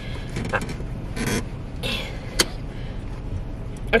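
Low steady hum of a stopped car with its engine idling, heard from inside the cabin, with a few brief rustles and one sharp click about two and a half seconds in as things are handled in the seat.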